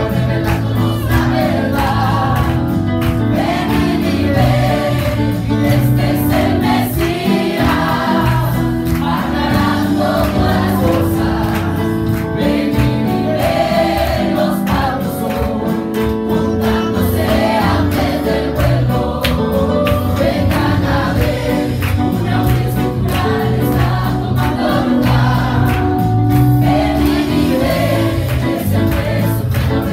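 A small vocal group of men and women singing a Spanish-language gospel song together into microphones, amplified through a PA, over a steady instrumental accompaniment with a beat.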